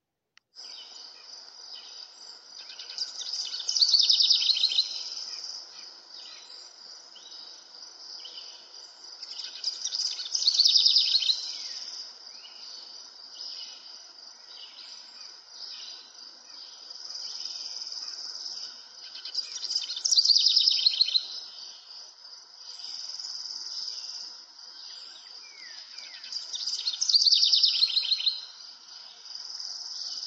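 Birdsong over a steady chirring of insects, with a louder trill about every six to seven seconds.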